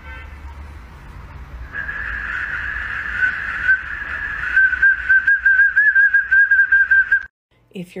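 Green plastic whistle held in a dachshund's mouth, sounding a steady high note from about two seconds in that breaks into a rapid warble of short toots, about four a second, and cuts off suddenly near the end.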